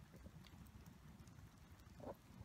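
Near silence: a faint low rumble with a few faint crackles from a wood bonfire burning.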